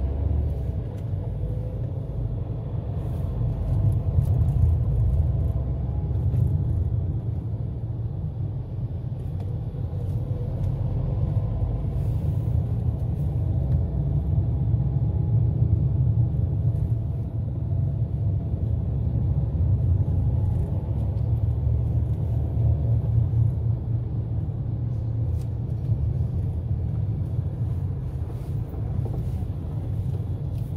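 Steady low rumble of a car's engine and tyres on the road, heard from inside the moving car.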